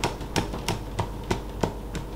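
A makeup setting spray bottle pumped over and over, a quick run of short spritzes at about three a second.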